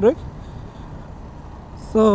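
Steady wind and road noise from a motorcycle riding along at an even speed, with no distinct engine note. A man's voice trails off at the start and starts again near the end.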